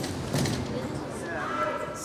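A fist banging on a jail holding-cell door: two knocks within the first half second.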